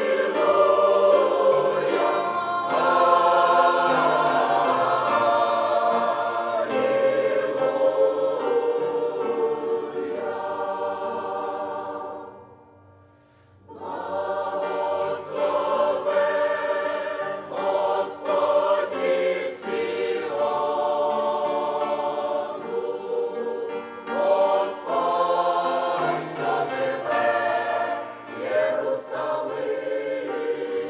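Mixed church choir of men's and women's voices singing a hymn in sustained chords. The singing breaks off for a second or so a little before halfway, then comes back in.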